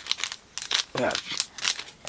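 Crinkling and rustling of trading cards and pack wrappers being handled, a run of quick, sharp crackles.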